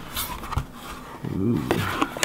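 Handling of a cardboard parts box and its paper instruction sheet: rustling with a series of light clicks and knocks as the contents are moved. A short voiced hum about a second and a half in.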